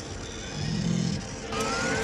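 Sci-fi TV soundtrack ambience inside a spaceship: a steady hiss with a low hum. A thin rising electronic whine comes in during the last half second.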